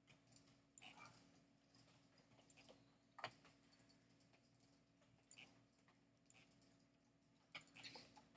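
Near silence: room tone with a faint steady hum and scattered faint clicks and taps.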